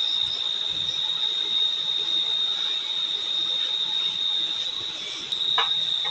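A steady high-pitched whine holds at one pitch throughout over a soft hiss, with a brief knock near the end.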